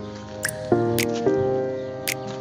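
Background music: sustained pitched notes that shift to a new chord about every half second, with short bright clicks about half a second and a second in.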